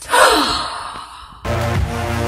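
A loud, breathy sigh-like exhale sliding down in pitch and fading over about a second and a half. Then electronic dance music with a heavy bass beat cuts in suddenly.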